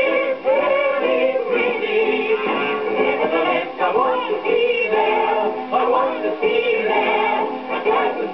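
Music-hall song, singing with band accompaniment, playing from an Eclipse 78 rpm record on a gramophone. The sound is thin, with no treble above the upper mid-range.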